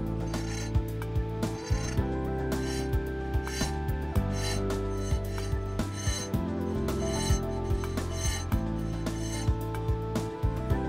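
Hand file strokes rasping back and forth in a square hole through a brass plate, opening the hole out to take the main bearing, at roughly one and a half strokes a second. Soft background music runs underneath.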